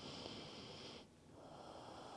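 Faint breathing through the nose: one slow breath ending about a second in, the next beginning soon after.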